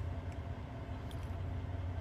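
Steady low hum of a vehicle engine heard inside the cab.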